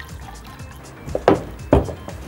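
Broth being poured into a measuring jug for a sauce, over background music, with two short louder sounds a little after halfway.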